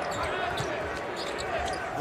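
Basketball game sounds: the ball bouncing and players moving on a hardwood court, with a voice talking over the play.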